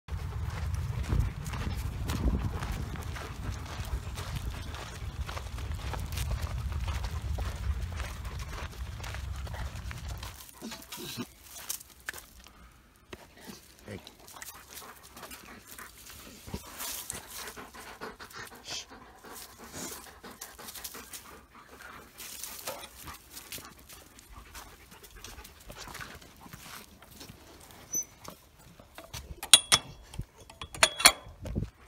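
Dog panting and moving about, with a low rumble on the microphone for about the first ten seconds and a few sharp clicks near the end.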